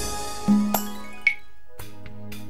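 Instrumental karaoke backing track (original beat) of a Vietnamese song, with no vocals: a crash rings out and fades at the start, a held low note comes in about half a second in, and a short bright ping sounds a little over a second in. The music thins out briefly, then a new phrase with steady held notes starts near the end.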